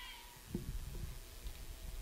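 A faint, high-pitched drawn-out shout from a distant voice, fading out just after the start, then a few faint short knocks, the clearest about half a second in.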